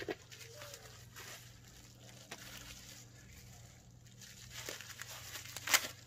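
Plastic packaging and bubble wrap rustling and crinkling as it is handled, with scattered sharp crackles and a louder crackle near the end.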